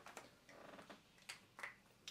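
Near silence with a few faint clicks and a soft scratch of a pen writing on a paper chart.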